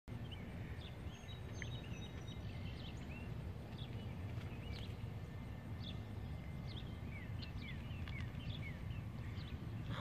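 Outdoor ambience: scattered short bird chirps and whistles over a steady low background rumble.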